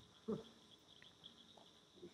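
Near silence: faint room tone in a pause between spoken sentences, with one brief faint sound about a third of a second in.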